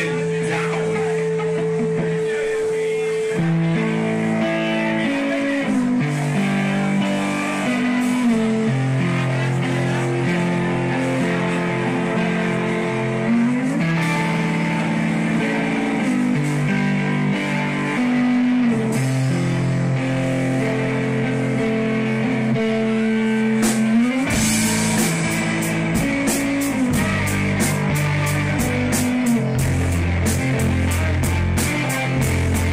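Live rock band playing an instrumental passage: electric guitars play a riff of held notes with slides between them, over bass. The drum kit comes in with a steady beat near the end.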